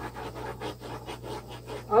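Small handheld torch flame hissing with a rapid, irregular flutter as it is passed over wet acrylic pour paint to pop air bubbles.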